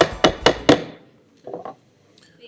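A wooden gavel rapped repeatedly on its block, about four sharp raps a second, six in all, the last fading out under a second in, with two weaker knocks shortly after.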